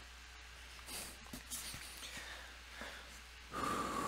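Faint handling noises, then a loud breath out through the nose into a close headset microphone about three and a half seconds in. The balloon does not pop.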